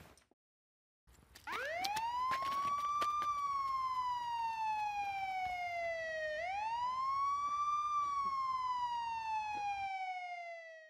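Emergency-vehicle siren in a slow wail, coming in after a second of silence: two cycles, each sweeping quickly up to a high peak and then falling slowly, with a few sharp clicks during the first rise.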